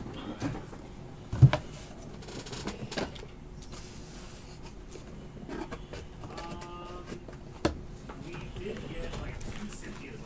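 Trading cards being handled and put away into a cardboard card storage box, with two sharp knocks, about a second and a half in and again about two seconds before the end, against a quiet room.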